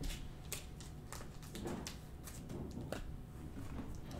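Panini Optic basketball trading cards being flipped and handled: a string of faint, irregular ticks and snaps as the stiff cards slide and click against each other.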